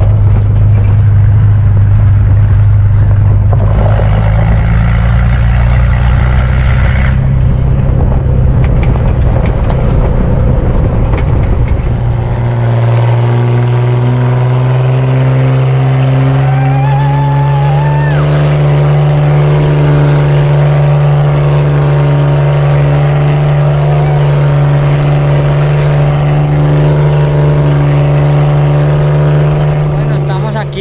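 Engine of a van driving at speed, a loud steady drone. About twelve seconds in, the note shifts to a slightly higher, steadier pitch.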